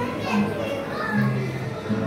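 Background music with held notes, mixed with the chatter of people and children's voices.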